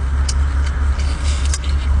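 Steady low engine drone, with a scattering of sharp clicks and smacks as cooked shellfish is pulled apart and eaten close to the microphone.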